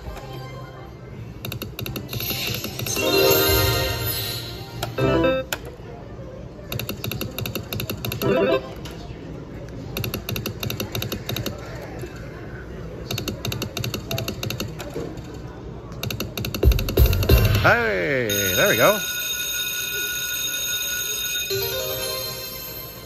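Bingo-based video slot machine playing its game sounds: several spins of the reels with rapid electronic ticking and short win jingles, then near the end swooping tones and a held ringing chime as three bonus scatters land and trigger free spins.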